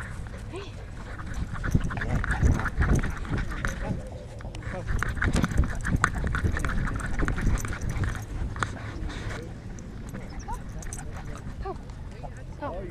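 Sound from a GoPro mounted on a Boston Terrier's harness as it runs and plays on grass: irregular thumps and rubbing as the camera jostles with the dog's movement, the dog's own animal sounds, and people's voices in the background.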